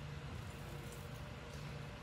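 Steady low background hum and faint hiss of the room, with no distinct event.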